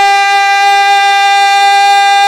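A man's singing voice holding one long, steady high note in a qasida recitation, amplified through a microphone.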